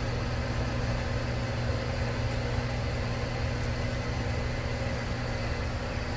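Greenhouse exhaust fan running with a steady electric-motor hum, drawing air through a wetted evaporative cooling pad.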